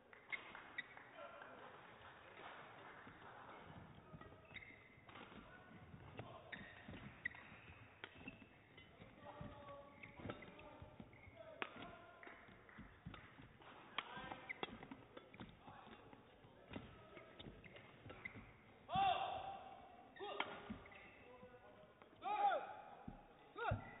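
Badminton rally: a run of sharp racket hits on the shuttlecock and footfalls on the court mat, with short high shoe squeaks. In the last few seconds come a few louder squeals or cries.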